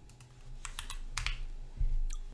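Computer keyboard keys clicking: a handful of quick keystrokes in the first second or so, then a low thump near the end.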